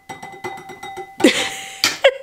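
Wine trickling from a small glass bottle into a stemmed wine glass, with a faint steady ringing tone and light ticks as the last drops go in. About a second and a quarter in comes a louder, brief noisy clatter, likely the bottle being brought down.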